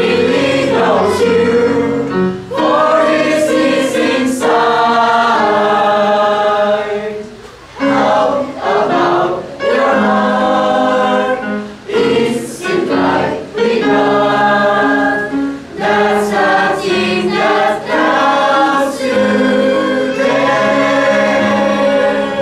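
Mixed choir of men and women singing a gospel hymn together, in held phrases with short breaks between them, the longest about seven and a half seconds in.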